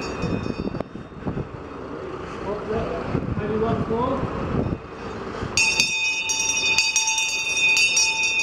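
A town crier's brass handbell ringing with rapid repeated strokes, fading out in the first second and starting again a little past halfway. Voices are heard in the gap between.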